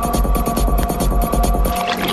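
Psychedelic trance music with a rolling, pulsing bassline under steady high synth tones. Near the end the bass drops out and a hissy, washy synth sweep comes in.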